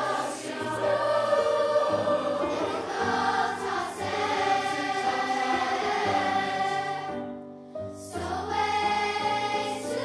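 Children's choir singing long held notes together. The choir breaks off briefly near the end, then starts a new phrase.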